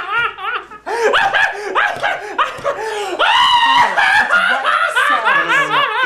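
A man laughing hard, in repeated high-pitched bursts of belly laughter that break off briefly about a second in and then carry on.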